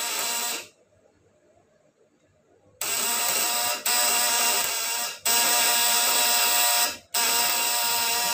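A homemade 24 V high-voltage transformer unit with vibrating contact-breaker points (platina) buzzing loudly and harshly under a lamp load. It cuts out less than a second in and stays off for about two seconds. Then it buzzes again in three stretches, with two brief breaks, as it is switched on and off.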